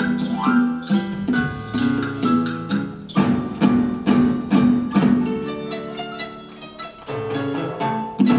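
Marimba orchestra playing: a quick run of mallet notes on several wooden marimbas, with percussion behind. It eases to softer held notes about six seconds in, then picks up again near the end.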